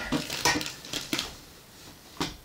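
A white folding chair with a metal frame being handled and put aside: a few knocks and rattles, near the start, around half a second in and just after one second.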